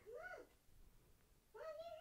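A domestic cat meowing faintly twice: a short call that rises and falls, then a second call that rises near the end.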